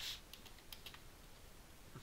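A few faint, scattered keystrokes on a computer keyboard, opening with a short hiss.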